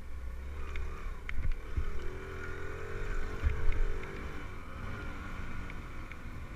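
Dirt bike engine running, its pitch rising and falling as the throttle changes, heard through a helmet-mounted camera with wind buffeting the microphone. A couple of low thumps stand out, the loudest about three and a half seconds in.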